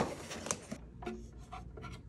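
Cardboard packaging rubbing and scraping as it is lifted off the player, with a sharp tap at the start and another about half a second in. This is followed by softer scrapes and taps as the unit and its side panel are handled.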